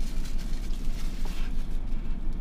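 Steady low rumble inside a car cabin, with light rustling of packaging as a small dash cam is unwrapped by hand.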